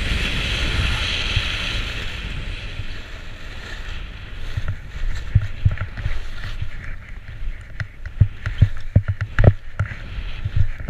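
Skis hissing over snow with wind rushing on a body-mounted camera's microphone, the rush fading after a couple of seconds. From about five seconds in, a string of irregular low thumps and knocks as the skis cross bumpy snow between trees.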